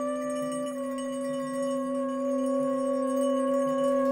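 Trumpet holding one long, steady note over a steady low drone, with high bell-like ringing tones above.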